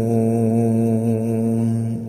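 A male reciter's voice holding the long drawn-out final note of a Quran recitation, steady in pitch, with the room's reverberation around it. The note stops near the end.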